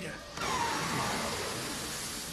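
Sci-fi speeder engine sound effect from an animated show's soundtrack. It comes in suddenly about half a second in with a rushing noise and a falling whine, then runs steadily.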